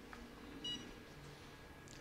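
A single short electronic beep, about two-thirds of a second in, over a faint steady background hum.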